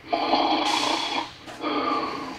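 Snoring from the sleeping guard figure played through a speaker: two loud snores, the second starting about a second and a half in.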